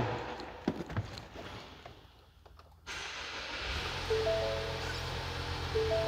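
2017 Ford Explorer's 2.3-litre turbocharged four-cylinder EcoBoost engine being started: a steady rush of air comes in about three seconds in, a low engine rumble follows a moment later and settles into a smooth idle. Over the idle, the dashboard's door-ajar warning chime sounds in short repeated tones, twice.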